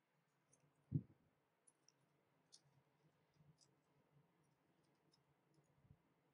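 Faint ticks and crackles of origami paper being handled and creased by fingers, with one soft thump about a second in.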